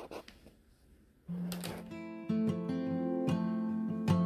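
Faint scratching of a felt-tip marker writing on paper, then acoustic guitar background music comes in about a second in and carries on.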